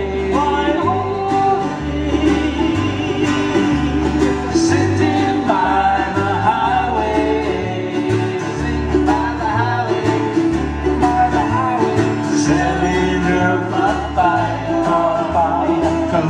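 Live Hawaiian music on acoustic guitar, 'ukulele and bass: a steady strummed accompaniment over a walking bass line.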